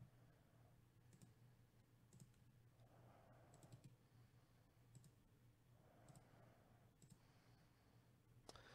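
Near silence, with a few faint, sharp computer mouse clicks spaced about a second apart over a low steady hum.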